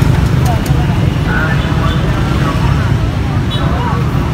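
Outdoor street ambience: a steady low rumble throughout, with faint voices talking in the background.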